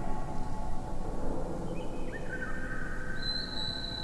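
Slowed-down wind chime recordings layered into an electroacoustic piece: bamboo and metal chime tones drawn out into long, held ringing notes over a steady low rumble. New, higher tones enter one after another in the second half.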